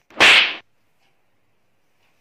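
One quick, loud swish lasting about half a second, just after the start.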